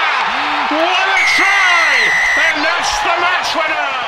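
Stadium crowd cheering as a try is scored, with a man's excited commentary over it. About a second in, a referee's whistle blows one steady blast lasting just over a second.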